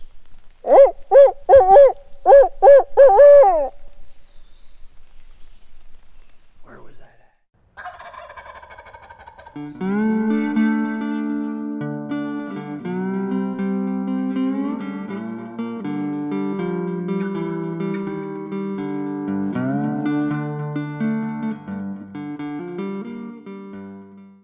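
A loud series of about seven bird calls, evenly spaced over some three seconds, each rising and falling in pitch. From about eight seconds in, background music with guitar plays on.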